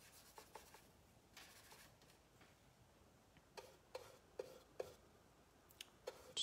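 Near silence with the faint rubbing and soft taps of a paintbrush working acrylic paint. A quick run of about five small taps comes a little past halfway.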